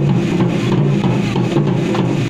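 Music with percussion and a steady low accompaniment that shifts from chord to chord.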